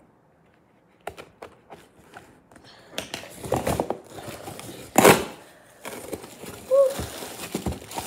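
Shiny plastic packaging being crinkled and pulled at by hand as it is torn open. There are scattered clicks at first, then continuous crinkling, with one loud rip about five seconds in.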